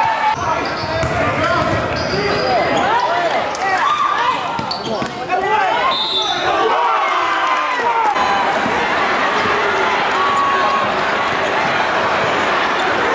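Live basketball game sound in a gym: many overlapping shouts from players and spectators, with a basketball bouncing on the hardwood and brief high sneaker squeaks.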